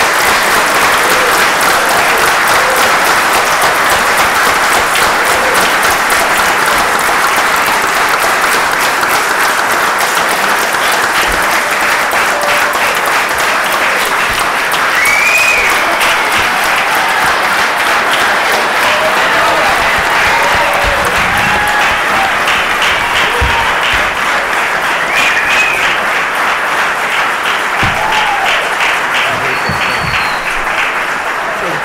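An audience applauding at length, with a few voices calling out over the clapping; it eases off slightly near the end.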